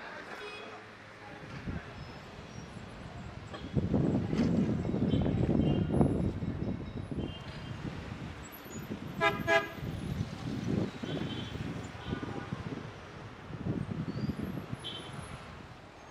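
Street traffic noise with a car horn giving two short toots about nine seconds in; the traffic is louder for a few seconds before that.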